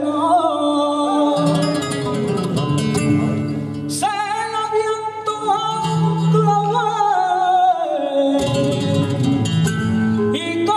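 A male flamenco singer sings fandangos through a microphone with heavily ornamented, wavering melodic lines, accompanied by a flamenco guitar. The guitar strums between the sung phrases, and a new long sung phrase begins about four seconds in.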